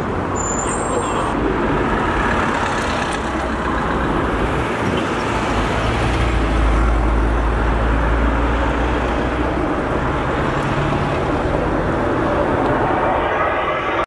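Highway traffic passing steadily, with a heavy vehicle's deep engine rumble swelling in the middle.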